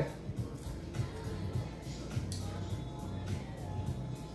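Background music playing at a low level, carried by steady low bass notes.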